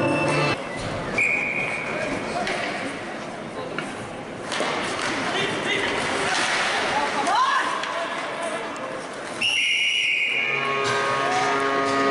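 Ice hockey referee's whistle blowing in an arena, a short blast about a second in and a longer, louder one near the ten-second mark. Between them is the noise of the rink and its spectators, and arena music plays at the very start and again after the second whistle.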